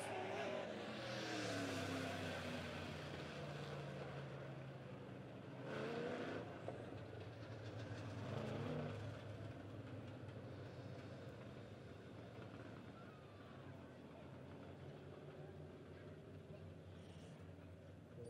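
Engines of a field of dirt-track race cars, heard faintly and far off. They drop in pitch over the first few seconds as the cars slow for a caution, then settle into a steady low drone, with a brief louder rise about six seconds in.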